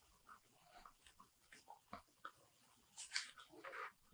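Near silence, with a few faint ticks and rustles in the second half as a thick hardcover book's front cover is swung open.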